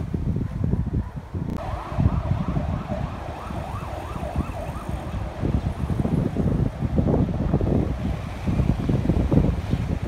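Emergency-vehicle siren in a fast yelp, its pitch rising and falling about three times a second, starting suddenly about a second and a half in and lasting a few seconds, over street traffic and wind rumbling on the microphone.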